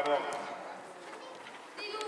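A man calls out "Dajmo" ("come on"). Then comes the quieter background noise of a youth indoor football game in a sports hall, with another short, high-pitched shout near the end.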